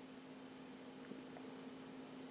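Quiet room tone: a faint steady hum over light hiss.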